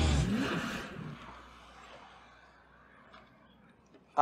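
A car engine sound effect revving, its pitch rising and falling in the first second, then fading away over the next two seconds to near quiet.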